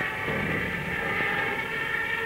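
Steady drone of an aircraft engine, with a thin steady whine held above it.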